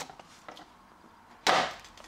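A model locomotive's polystyrene tray being slid out of its cardboard box: faint handling noise, then one sharp knock about one and a half seconds in as the tray comes free.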